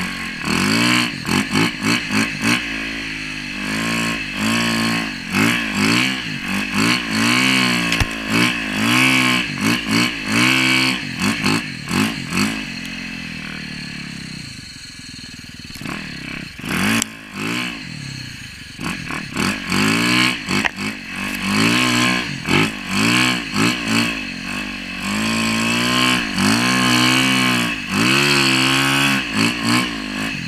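2016 Yamaha YZ450FX single-cylinder four-stroke engine on a tracked snow bike, revving up and down in quick throttle bursts as it is ridden through deep powder. Midway it drops back to a lower, steadier note for a few seconds, then the rapid revving picks up again, with occasional clattering knocks.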